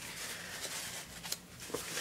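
Quiet room tone with faint handling noise from a palette knife and art supplies, including a light tick about two-thirds of the way through.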